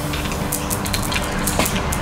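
Mentos candies being dropped into a plastic bottle of orange soda, with a few light clicks as they hit the bottle, over a steady hiss of fizzing.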